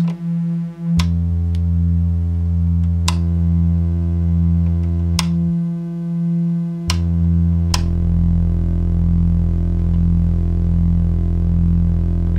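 Corsynth VC LFO running at audio rate as an oscillator, a steady synthesizer drone of its sine and saw waves through a filter. Lower octave tones from its pulse wave, split into octaves by a comparator module, cut in and change several times, each change with a sharp click of a patch cable going in, and settle into a steady deep drone a little past halfway.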